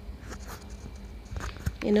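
Soft rustling and a few light clicks of stiff silk brocade blouse fabric being shifted and turned by hand under a sewing machine, with the machine itself not running. A woman's voice starts near the end.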